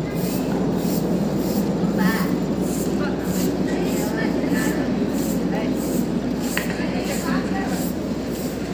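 Road-work machinery running steadily: a continuous heavy engine rumble with a rhythmic clatter about twice a second, and faint voices in the background.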